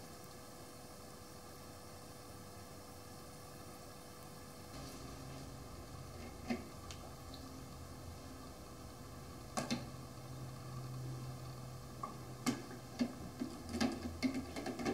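Quiet workshop room tone with a faint steady hum, then scattered light clicks and taps, growing busier near the end, as metal pliers lift a small metal part out of a plastic cup of acid and carry it to a plastic rinse cup.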